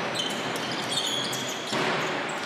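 Live court sound of an indoor basketball game: steady crowd noise, with the ball bouncing and a few short high squeaks on the hardwood floor.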